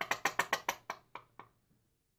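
A quick run of about ten small plastic clicks from a squeeze bottle of blue acrylic paint being handled as paint is put onto a tile, close together at first, then spacing out and fading after about a second.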